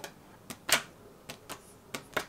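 A deck of playing cards being flipped up off the edge of a wooden desk and caught in the hand, giving a handful of short sharp clicks and taps of card on wood and card on hand, the loudest a little under a second in.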